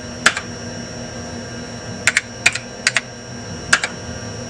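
Keys struck on a Compaq Portable computer's keyboard: about seven separate clicks, one near the start and a quicker run in the second half, as a DOS command is typed and entered. A steady low hum and a faint high whine sit underneath.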